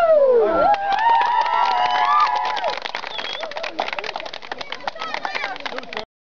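A group of girls whooping and cheering as their song ends, one voice sliding down in pitch at the start, then hand clapping from about three seconds in.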